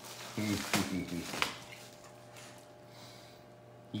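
A dog tearing and chewing a paper bubble mailer: a few sharp crinkles and rips of paper in the first second and a half, mixed with a short low voice-like sound.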